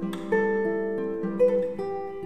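Classical guitar playing slow plucked notes and chords that are left to ring, with new notes struck a few times through the passage.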